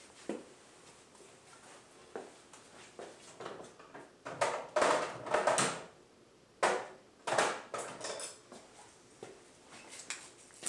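Hand-handling noise in a small workshop: quiet for the first few seconds, then a cluster of short rustling, rubbing bursts about halfway through and a few more brief ones shortly after.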